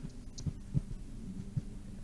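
Low steady hum from a voice-call line, broken by a few soft low thuds.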